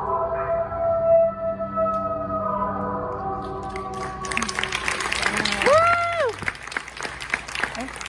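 The song's final note and the backing track's chord are held and fade. About four seconds in, audience applause breaks out, with one person's rising-and-falling "whoo" in the middle of it.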